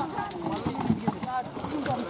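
A heap of freshly landed catla fish out of water making many short, overlapping voice-like 'talking' sounds, with faint ticks among them.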